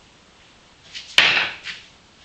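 A single sharp knock about a second in, followed by a short hissing tail that quickly dies away.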